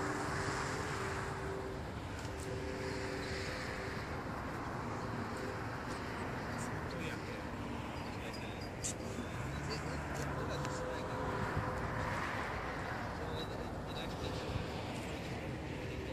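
Distant drone of a radio-controlled model airplane flying stunts high overhead, swelling and fading as it manoeuvres, loudest near the start and again about twelve seconds in.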